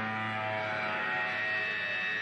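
Electric guitars ringing out through their amplifiers on a held chord, a steady drone with no drums, and a high ringing tone setting in about a second in.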